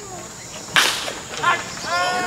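A baseball bat hitting a pitched ball: a single sharp crack about three-quarters of a second in, followed by spectators starting to shout.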